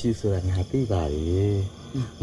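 Men's voices in dialogue, one drawn-out wavering vocal in the middle. Crickets chirp steadily behind them as night ambience.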